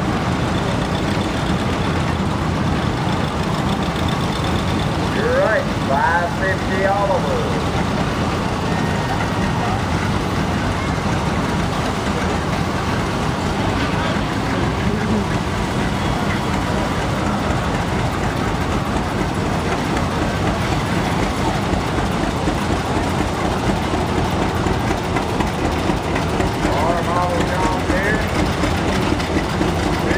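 Antique John Deere two-cylinder tractor engine running steadily at low speed as the tractor drives slowly past, coming close near the end, with voices now and then.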